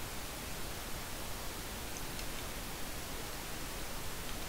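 Steady hiss of the recording's noise floor from an open microphone, with a faint tick or two about two seconds in.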